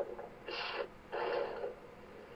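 Two short, sharp fighting cries (kiai yells), the second a little longer than the first.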